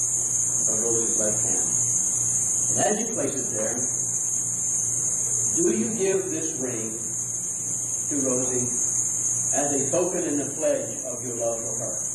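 Indistinct speech in short phrases, over a steady high-pitched hiss and a low hum.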